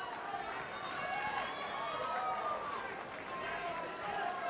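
Boxing-arena crowd shouting and cheering, many voices overlapping without clear words.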